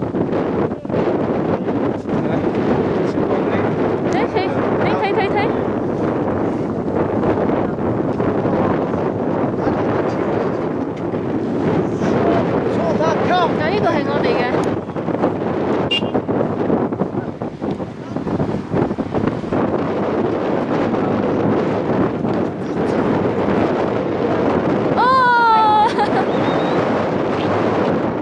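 Strong wind buffeting the microphone, with large cloth prayer flags flapping. A person's voice calls out once in a long wavering note about 25 seconds in.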